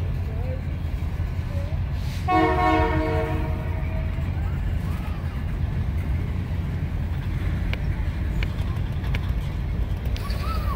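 Freight train cars rolling past close by with a steady low rumble. About two seconds in, a horn sounds once, steady and a little over a second long. Faint crowd voices lie underneath.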